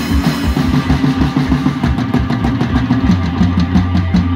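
Death metal band playing live: heavily distorted guitar riffing over a drum kit with fast, regular kick-drum beats. About three seconds in the riff settles onto a held low note.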